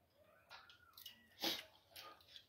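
Mostly quiet, with a few faint handling noises and one short breathy sound from the person about one and a half seconds in.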